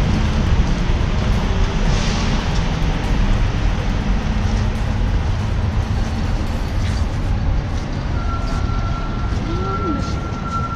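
Steady low rumble of truck engines running in the yard. A thin, steady high tone comes in about eight seconds in.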